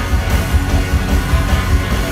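Live band playing an instrumental stretch of a roots-rock song, with upright bass and guitar over a pulsing beat. The recording is made from within the audience and is heavy in the low end.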